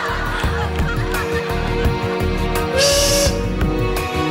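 A goose-like honking comic sound effect played over steady sustained tones, with a brighter burst about three seconds in.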